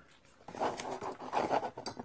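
A cloth rag rubbing along the lead wires of a record-changer motor, wiping goo off them: uneven scratchy rubbing strokes that start about half a second in.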